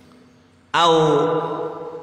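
After a brief pause, a man's voice intones one long, steady held syllable about three quarters of a second in, in the chanted style of reading an Arabic text aloud.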